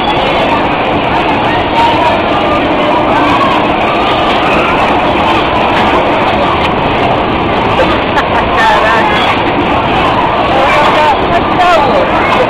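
Loud, steady din from a bumper-car ride, with voices of riders and onlookers mixed in.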